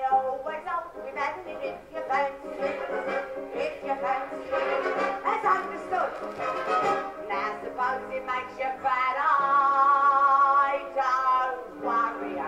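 A woman singing a cockney music-hall comic song in quick lines over a theatre band, then holding one long note about nine seconds in.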